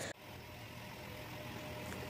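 Faint steady low hum of background noise, with a thin high tone in the middle.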